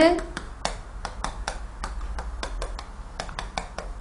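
Chalk tapping and scratching on a chalkboard as an equation is written: a quick run of sharp, uneven clicks, about five or six a second.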